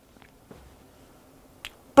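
A pause in a quiet room with a few faint clicks, the sharpest one shortly before speech resumes.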